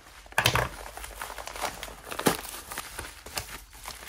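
Yellow padded paper mailer being slit open and handled, paper crinkling and tearing in irregular rustles and crackles as the bubble-wrapped phone is pulled out. There is a louder burst about half a second in and a sharp crackle a little past two seconds.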